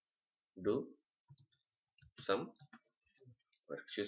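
Computer keyboard keys clicking in a quick, irregular run of keystrokes as a word is typed.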